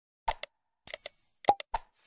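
Mouse-click and bell sound effects of an animated subscribe button: two short clicks, then a bell ding about a second in, followed by three quick clicks.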